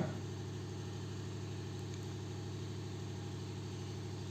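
Steady low hum of a machine running in the background, even and unchanging.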